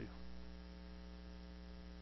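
Faint, steady electrical mains hum, a single unchanging buzz with a stack of evenly spaced overtones.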